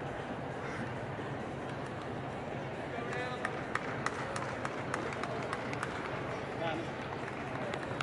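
Arena crowd murmuring, with scattered sharp hand claps beginning about three seconds in and a couple of short calls from the stands.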